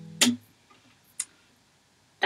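The last strummed chord of an acoustic guitar rings out and is cut off about a quarter second in by a short knock as the strings are muted by hand. A single faint click follows about a second in.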